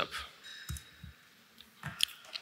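A few soft clicks and low knocks at a lectern, with the end of a man's word at the very start. The strongest knock comes near the end.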